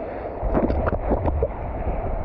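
Seawater sloshing and splashing around a surfboard over a shallow rock reef, with a few sharper splashes about half a second to a second in. Low wind rumble on the microphone runs under it from about half a second in.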